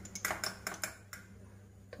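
Light metal clicks of a small spoon against a spice container as turmeric is scooped out: a quick run of clicks in the first second and one more near the end, over a low steady hum.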